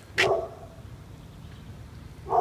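A dog barks once, a single short bark just after the start.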